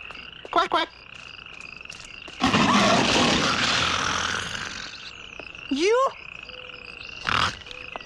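Jungle ambience of croaking frogs and chirping insects with a steady high trill. About two and a half seconds in, a loud, rough roar swells up and fades away over about two and a half seconds.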